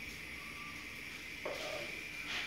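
Quiet kitchen sounds of a wooden spoon drizzling warm oil, flavoured with bacon fat, from a frying pan over spinach and rocket leaves, over a faint steady hiss, with a soft brief sound about one and a half seconds in.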